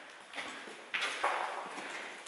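A few footsteps on a debris-strewn hard floor, each a short scuffing crunch.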